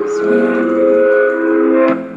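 Instrumental backing music holding a chord of several steady notes between sung lines, with no voice.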